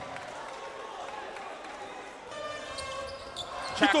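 A basketball bouncing on the court during live play, over the background noise and voices of the arena crowd. A steadier, higher-pitched sound from the hall joins in the second half.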